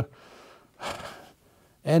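A man drawing a short, breathy inhale through the mouth about a second in, between two phrases of speech.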